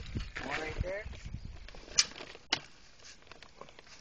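Shovelled dirt and clods dropping into a hole, with low thuds early on, then two sharp clicks about half a second apart near the middle.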